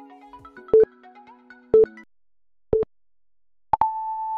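Workout interval-timer countdown: three short beeps a second apart, then a longer, higher-pitched beep near the end that marks the start of the next work interval. Soft background music plays under the first beeps and stops about two seconds in.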